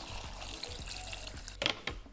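Water pouring from a glass jug into a blender jar of fruit, over background music. A short clatter near the end as the plastic blender lid is fitted on.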